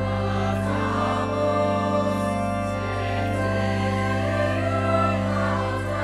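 Youth choir singing with pipe organ accompaniment, the voices moving in sustained lines over a steady low organ note held underneath.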